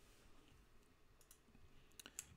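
Near silence: faint room tone with a few soft clicks of a computer mouse or keyboard in the second half.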